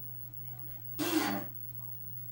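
A person's short, loud burst of breath and voice from the throat, like a throat clear or cough, once about a second in, lasting about half a second. A steady low hum runs underneath.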